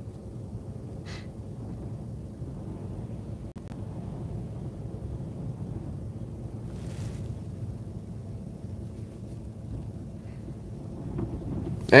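Steady low rumble inside a stationary car, with a couple of faint short taps.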